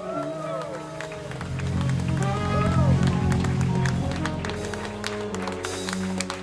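Live band music: an electric bass holds low notes under drum and cymbal hits, with higher tones sliding up and down over them. It swells louder in the middle.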